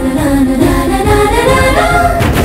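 Background music with singing voices, its melody climbing in pitch through the second half.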